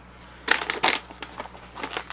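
Plastic dog-treat pouch crinkling as it is handled, with two sharper crackles about half a second and just under a second in, then fainter rustling.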